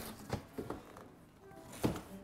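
Soft rustling and a few light knocks of plastic air-column packaging and a cardboard box as a wrapped acoustic guitar is lifted out, with a sharper knock near the end. Faint music plays underneath.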